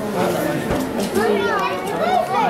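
Chatter of several shoppers talking at once, with high children's voices rising and falling over it.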